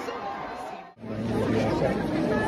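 Crowd chatter, many overlapping voices. About a second in the sound drops out abruptly at an edit, then picks up again with louder, closer voices.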